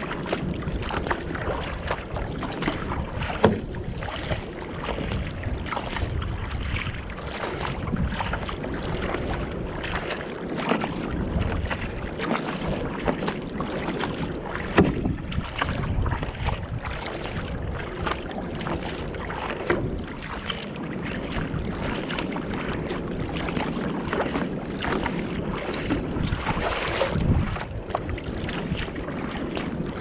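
Sea water rushing and splashing against the bow of a Fenn Bluefin-S surfski under way, with irregular splashes and wind on the microphone. A louder burst of spray comes off the bow near the end.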